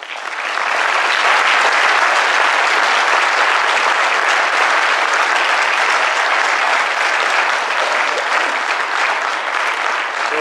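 Audience applauding, a dense steady clapping that swells up in the first second and then holds.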